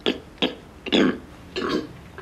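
A man making four short, burp-like guttural throat noises, the loudest about a second in, to scratch an itchy throat.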